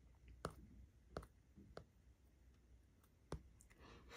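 Near silence broken by four faint, sharp clicks spread unevenly over a few seconds.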